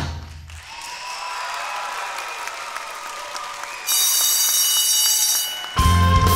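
Audience clapping as a song ends. About four seconds in, a loud, high electric ringing like a school bell sounds over the clapping for under two seconds. Rock music with electric guitar starts just before the end.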